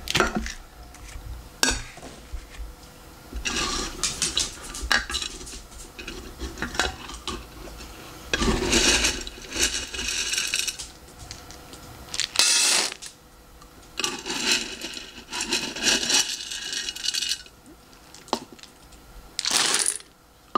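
Dry dog kibble rattling as a plastic scoop digs into it in a glass jar and pours it into a stainless steel bowl. It comes in several rattling bursts of a few seconds each, with sharp clicks in between.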